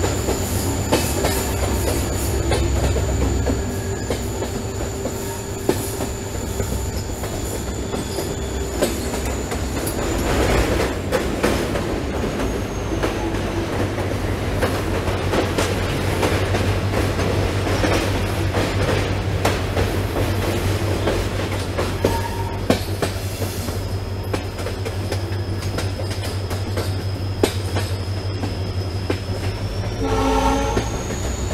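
Passenger train coaches running along the track, with scattered clicks of the wheels over rail joints and a steady rumble. A thin high wheel squeal from the curves holds for the first ten seconds or so, then slides down and fades; a second squeal sets in later and rises near the end.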